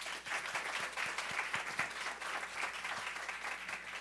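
An audience applauding, many hands clapping together at a steady level.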